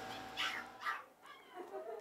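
A dog whimpering faintly in a few short, wavering whines.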